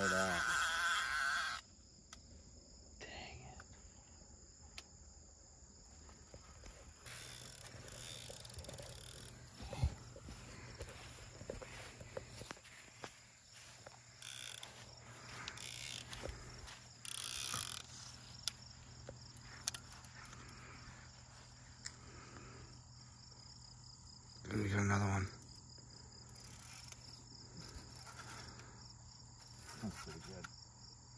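Crickets chirping steadily in a high, even pulsing drone, with scattered small clicks and rustles of handling. A short, loud, voice-like sound stands out about 25 seconds in.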